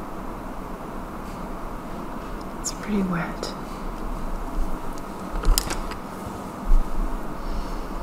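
Soft scratchy swishing of a flat paintbrush dragging wet glaze across a sketchbook page, with a few light clicks and taps. A brief murmured vocal sound about three seconds in.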